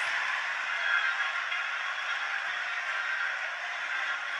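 Large church congregation applauding, a steady even clatter of many hands without a break.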